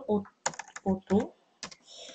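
Computer keyboard being typed on: a few separate key clicks, a quick cluster about half a second in and another near the end.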